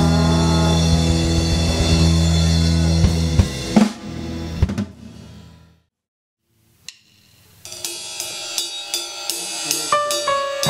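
Live rock band (electric guitar, bass guitar, drum kit) ending a song on a ringing chord that fades to silence about four seconds in. After a second or so of dead silence, the next song starts at about eight seconds with drums, hi-hat and cymbal hits under guitar.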